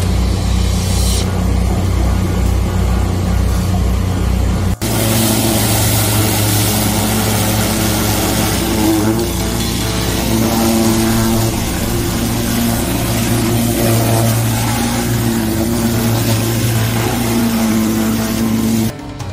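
Engine of a high-pressure sewer jetter running at a steady speed while it drives water through the jetting hose, with a strong hiss. The sound changes abruptly about five seconds in, after which the hiss is louder.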